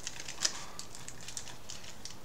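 Thick aluminium foil stretched over a hookah bowl being pierced with holes: a quick, irregular run of small ticks, with one louder tick about half a second in.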